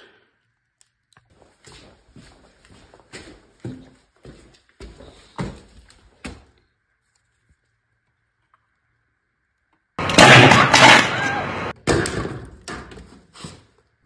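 Rummaging through a cardboard box of small electrical parts in plastic bags, with scattered quiet clicks and rustles. After a few seconds of near silence, a loud rough clattering, scraping noise starts suddenly about ten seconds in and breaks up into separate clicks over the next few seconds.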